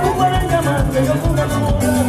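Live band dance music in an instrumental stretch: a steady, quick beat under a sustained melody line.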